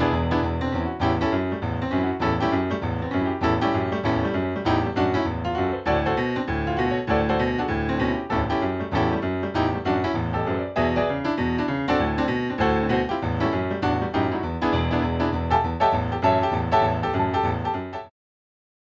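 Piano music with a steady stream of quick notes that stops abruptly at the end.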